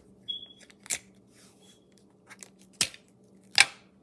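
Folded paper being handled and creased by hand on a wooden table: a few separate sharp crinkles and taps, with a brief high squeak near the start and the loudest crack near the end.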